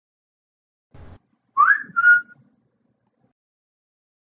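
A brief soft noise about a second in, then a loud two-note whistle: a quick rising note followed by a short steady one.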